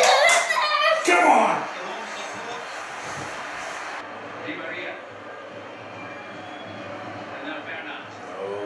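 Man and boy shouting and cheering a goal, with hand claps, loud for the first second or so. It then drops to a quieter steady background with faint voices.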